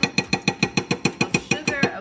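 Metal spoon clinking rapidly against the inside of a ceramic-coated saucepan while stirring, about ten clinks a second in an even run that stops just before the end.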